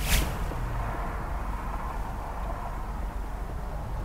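A Volkswagen Jetta 1.8 turbo running at low speed, a steady low hum under outdoor background noise. A brief sharp rush of noise comes right at the start.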